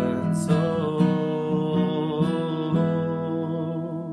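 Acoustic guitar strummed through the closing chords of a song, the chords ringing between strokes.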